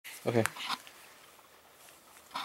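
A single low-pitched spoken "okay", with a sharp click right after it, then quiet room tone.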